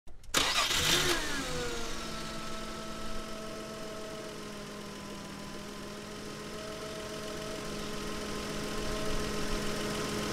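UAZ-452 van's engine starting about half a second in, revving briefly and falling in pitch as it settles into a steady idle.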